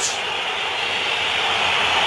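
Football stadium crowd noise: a steady din from the stands with no single shout standing out.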